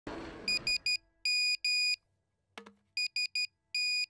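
Nokia mobile phone message alert: a high electronic tone beeping three short beeps and then two longer ones, twice over, announcing an incoming multimedia message. A short low thud falls between the two rounds.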